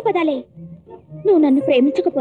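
A woman speaking in a fairly high voice in two short stretches, over background music with a steady held note.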